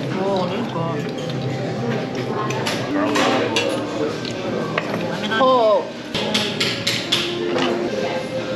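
Background voices in a busy dining room, with sharp clinks of metal forks and spoons against oyster shells and plates, coming in clusters about three seconds in and again after about six seconds.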